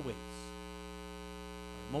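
Steady electrical mains hum in the sound system, a constant buzz made of many evenly spaced tones that does not change.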